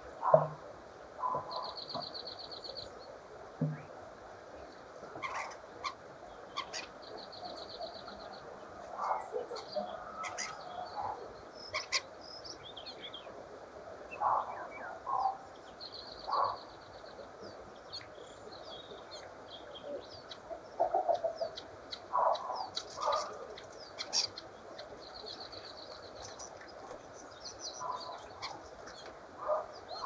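Common starling song: a rambling string of short chattering calls and clicks, with a buzzy rattle that comes back about four times.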